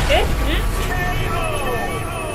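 An echoing video-game announcer voice calls "K.O.!" three times over a deep rumble.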